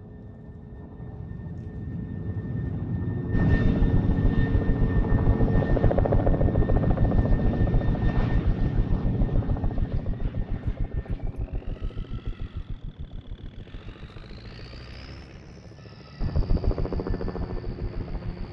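Helicopter rotor beating in a fast, even pulse that builds up, comes in loud about three seconds in and then slowly fades, with a high whine rising over it in the second half. The rotor beat returns suddenly loud near the end.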